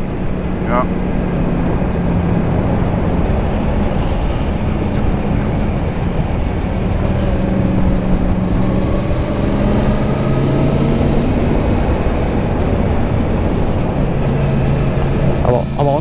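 Motorcycle engine running under way with wind rush, heard from the riding position. The engine note shifts and glides up and down a few times as the speed changes.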